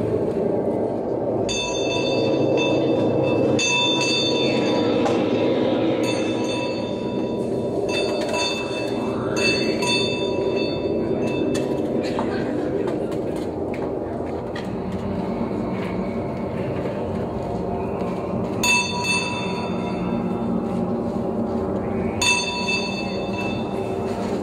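A steady, dense droning rumble, with bursts of high, bell-like ringing lasting a second or two each, several in the first half and twice more near the end.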